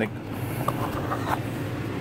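Steady low hum of a car cabin: engine and ventilation noise heard from inside the car.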